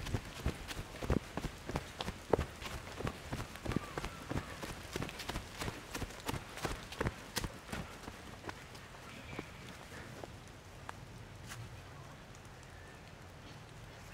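Footsteps walking briskly on a path covered in fallen leaves, a few steps a second, thinning out and stopping after about eight seconds.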